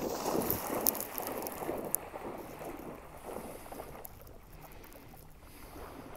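A dog splashing as it bounds through shallow water, loudest in the first two seconds with a couple of sharp slaps, then fading as it wades and swims away.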